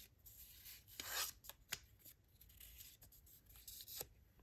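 Faint rustling of paper word cards being handled, loudest about a second in, with a few light clicks and taps as a card is set against a whiteboard near the end.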